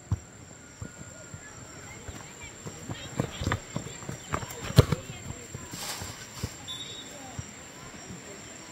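Football players' running footsteps on a grass pitch: irregular thuds, the loudest one about five seconds in.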